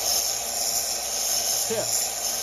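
Small benchtop belt sander running, with a brass 9 mm casing held against the belt and ground down into an arrow tip: a steady high-pitched grinding hiss.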